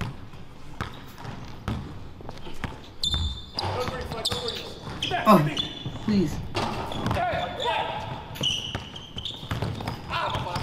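Basketball dribbled on a hardwood gym floor, a run of bounces through the first few seconds, followed by short high sneaker squeaks and players' voices from the game.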